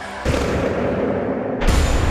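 Broadcast highlight-package transition sound effect: a noisy swell that starts suddenly about a quarter second in, then a deep boom with a rumbling tail near the end.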